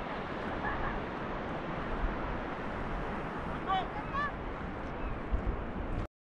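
Steady wind buffeting the microphone over the wash of distant surf, with a few short, high curved calls about four seconds in.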